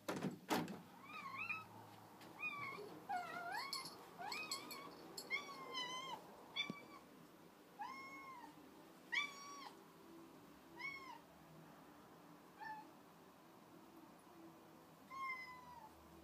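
Tabby cat meowing a dozen or so times, short arching calls coming about one a second at first and more sparsely later on; the owner takes the crying for the cat wanting to go out. Two sharp knocks at the very start.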